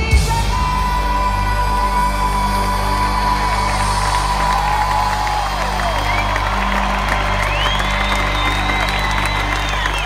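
Live worship band holding a sustained final chord through a stadium PA, with the crowd cheering and a few whoops in the second half.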